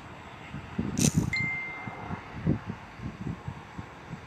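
A sharp clink about a second in, followed at once by a short, steady ding-like ringing tone. Low, irregular thumps run underneath.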